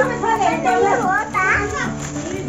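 Young children's excited voices, with no clear words, over background music.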